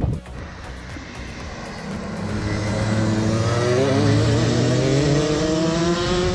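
Go-kart engines out on the track, rising in pitch as they accelerate and growing louder from about two seconds in.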